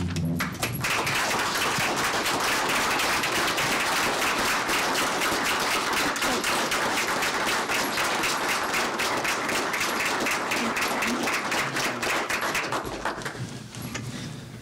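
A roomful of people applauding in a standing ovation: dense, steady clapping that starts about a second in and dies away near the end.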